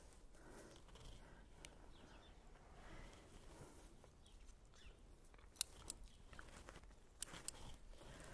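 Very faint: a few short, sharp snips of bonsai scissors cutting leaves off a maple bonsai, in the second half, over near-silent outdoor quiet.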